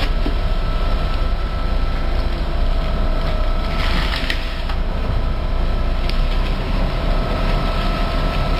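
Engine of the lifting plant running steadily as the cracked-off concrete pile head is hoisted clear of its reinforcing bars: a low, even rumble with a faint steady whine over it. A few short knocks come around four and six seconds in.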